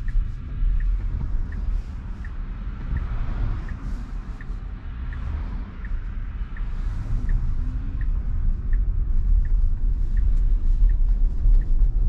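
Tesla Model Y turn-signal indicator ticking evenly, about one and a half ticks a second, as the car waits for and makes a left turn. Low cabin road rumble from the electric car runs underneath and grows louder in the second half as the car picks up speed through the turn.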